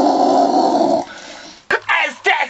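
A loud, rough guitar chord with a distorted sound is held and then cut off about a second in. A sharp click follows near the end, and then a man starts yelling.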